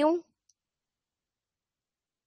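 A woman's voice finishing a drawn-out word, then a faint single click about half a second in, and near silence for the rest.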